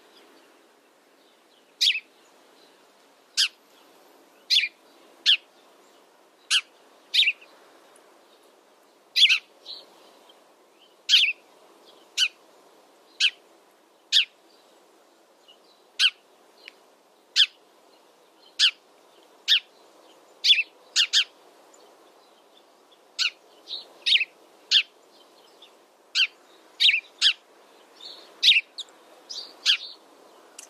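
House sparrow chirping: short, sharp single chirps about once a second, now and then two in quick succession, over faint steady background noise.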